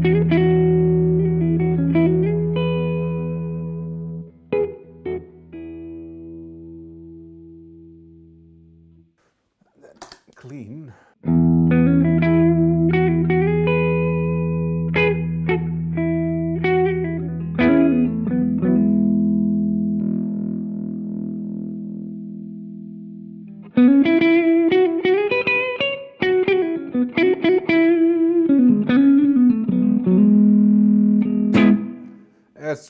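Gibson Les Paul electric guitar played through an amp: chords left ringing and slowly fading, with single notes picked over them and a short break near the middle. About three quarters of the way through, a busier lead phrase with string bends starts. By the end it runs through a Greer Soma 63 preamp/overdrive pedal that is switched on, giving a bit of grit and compression.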